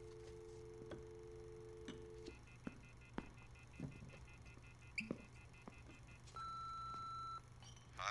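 Telephone dial tone, a steady two-note hum, cutting off after about two seconds, then a few faint clicks, and near the end a single answering-machine beep lasting about a second.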